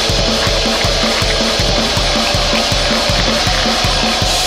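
Black metal: a dense wall of heavily distorted guitar over fast, evenly spaced drumming, loud and unbroken.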